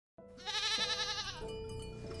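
A goat bleating once, a long quavering call lasting about a second, over a steady held tone of music.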